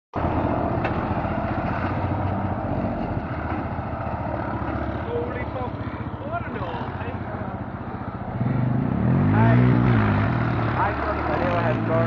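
Massey Ferguson 35X tractor's three-cylinder Perkins diesel engine running. About eight seconds in it gets louder as it is revved, its pitch rising and then falling back.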